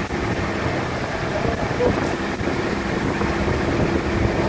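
Engine of a wooden outrigger boat running steadily while underway, a continuous low rumble with a steady hum, over wind and water noise.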